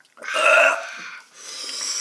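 A man burping loudly just after swallowing a mouthful of mouthwash, followed by a long breathy exhale.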